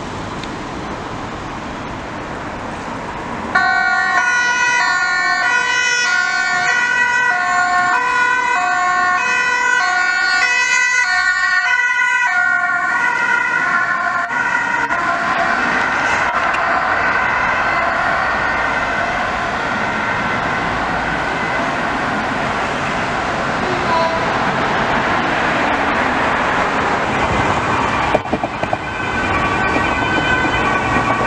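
Dutch ambulance two-tone siren switching on about three and a half seconds in, alternating between a high and a low note about twice a second. Later the notes blur into a denser siren sound over road traffic.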